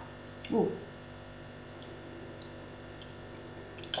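A woman's short "ooh", then faint, soft chewing of a mouthful of raw honeycomb, with a few small wet clicks from the mouth.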